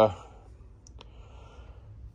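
Two faint, short clicks close together about a second in, over quiet room tone.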